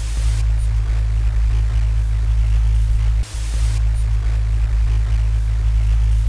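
A loud, steady, low-pitched hum with a faint hiss over it, dropping out briefly about three seconds in.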